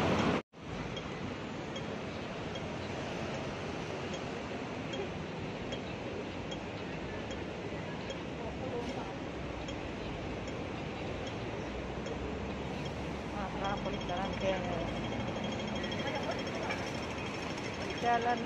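Hong Kong pedestrian-crossing audible signal over steady street traffic noise: a slow ticking that switches to rapid ticking about three-quarters of the way through, the signal that the crossing has turned green. Pedestrians' voices come in near the end.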